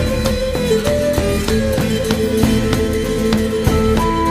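Instrumental music: plucked strings keep a steady pulse under a sustained melody line that slides in pitch.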